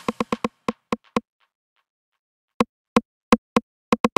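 Drum-machine 909 click sample, a short wood-block-like tick, playing on its own. There are seven quick, unevenly spaced strikes in about the first second, a pause of over a second, then five more strikes from about two and a half seconds in.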